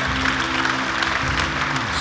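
Congregation applauding, steady clapping over soft background music holding sustained chords.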